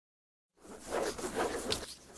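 Logo intro sound effect of playing cards sliding: a rustling swish that starts about half a second in, with a sharp snap near the end.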